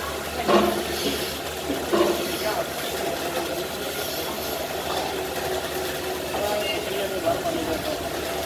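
Milking parlour machinery running with a steady hum, with water spraying from a washdown hose and indistinct voices over it.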